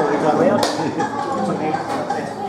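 Several people chatting in a room, with two sharp clicks or clinks: one about half a second in and one near the end.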